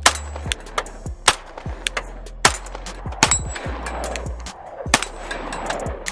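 Compensated 9mm CZ P10C pistol firing single shots at uneven intervals, about five loud reports with a few fainter ones, and the metallic ring of a steel target being hit.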